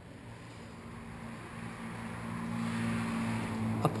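A motor vehicle's engine hum, a steady low drone that grows gradually louder over the four seconds as it approaches.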